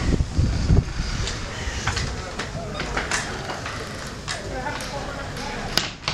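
Wind buffeting the microphone in the first second, then a series of light knocks and clicks with faint voices in a small room.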